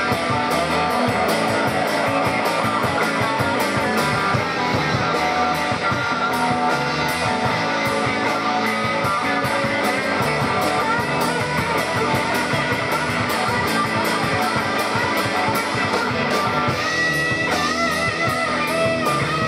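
Live rock band playing: electric guitars over a drum kit keeping a steady beat. Near the end a lead line with held, wavering notes stands out.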